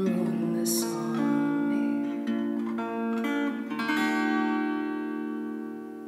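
Acoustic guitar playing the closing chords of a song, the last chord struck about four seconds in and left to ring and fade.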